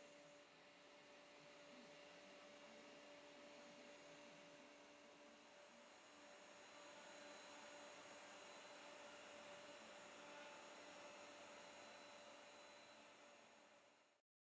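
Faint, steady hum and hiss of a CNC router's spindle motor (a compact handheld router) running, with two steady tones, a little louder in the second half.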